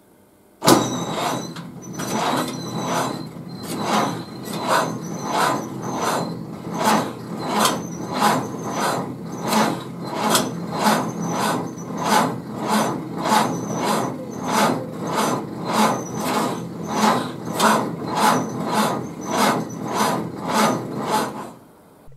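Ford Model A's four-cylinder engine being turned over by its electric starter after sitting all winter, cranking slowly in an even rhythm of about two compression beats a second without catching. It starts about a second in and stops just before the end.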